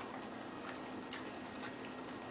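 Light, irregularly spaced clicks, about two a second, over a steady low hum.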